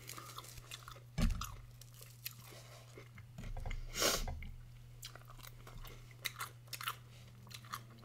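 Close-miked chewing and crunching of crisp bacon and grilled baguette, with scattered short crackles and a louder crunch about four seconds in.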